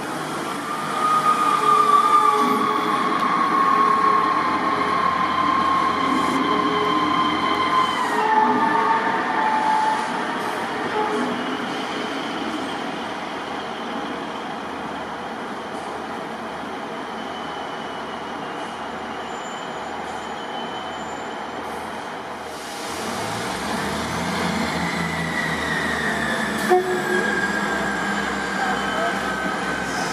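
Diesel multiple unit trains running through a station. For the first eight seconds a train rumbles past with high whining tones that step down in pitch around eight seconds in, then fade. About 23 seconds in, another train's diesel rumble builds, with a whine that slowly falls in pitch as it moves along the platform.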